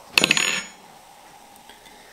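A short glassy clink with brief high ringing just after the start, a glass bottle knocking against a stemmed wine glass as sparkling wine is poured, followed by faint room tone.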